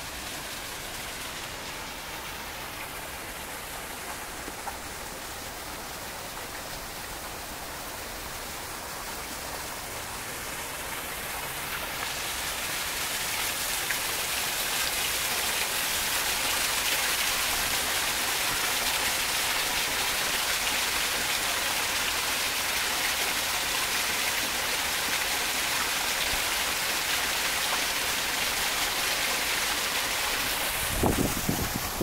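Small ornamental waterfall splashing over rocks: a steady rushing of water that grows louder over a few seconds, about a third of the way in, and then holds level.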